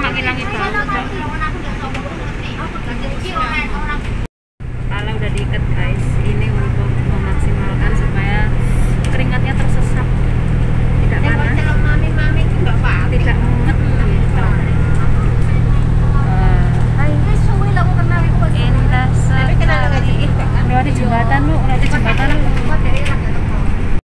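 Bus engine and road noise heard inside the passenger cabin as a steady low drone, with voices talking over it. The sound cuts out for a moment about four seconds in, and after that the drone is steadier and stronger.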